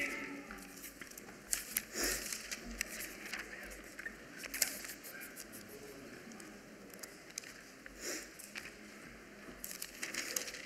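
Bible pages being leafed through to find a passage: a soft, irregular rustling of paper with small crinkles and clicks.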